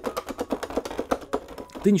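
Plastic keys of an unpowered MIDI keyboard clattering as fingers tap them quickly: a rapid run of light clicks, about eight to ten a second.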